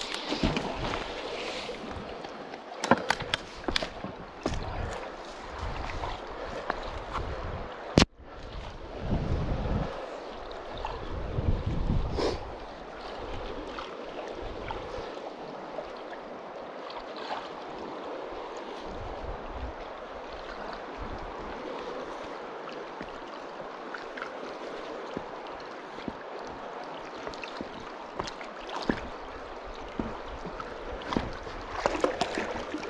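Steady rush of a flowing river's current, with scattered clicks and knocks in the first several seconds from handling the magnet-fishing rope, and a few low rumbles around ten to twelve seconds in.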